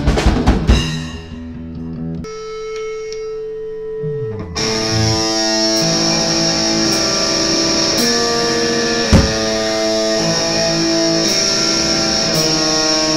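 Sludge metal band music: a fast drum fill ends within the first second, followed by a sparser passage of held notes with a low note sliding downward. About four and a half seconds in, the full band comes in with sustained, distorted electric guitar chords and a cymbal crash roughly every second.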